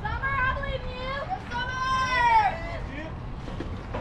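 High-pitched voices at a softball game calling out cheers: a few short shouts, then one long, drawn-out call in the middle, over a steady low outdoor rumble.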